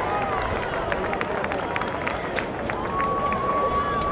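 Crowd of spectators in the stands, with mixed voices shouting and cheering and scattered sharp claps. About three seconds in, one long held high call starts.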